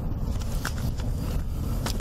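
Engine and road rumble inside a moving car, with a couple of light knocks, one under a second in and one near the end.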